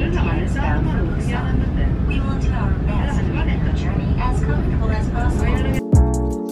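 Steady low rumble inside a moving train carriage, with indistinct voices talking over it. It all cuts off abruptly just before the end.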